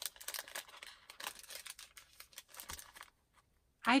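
Paper rustling and crackling as a folded sheet of pink paper is handled by hand, a patter of small crackles that stops about three seconds in.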